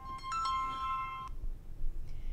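Mobile phone ringtone: a short electronic melody of two steady notes that cuts off abruptly after about a second and a quarter.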